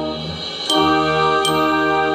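Glockenspiel bars struck with mallets, two ringing notes about three-quarters of a second apart, over an accompaniment of held chords.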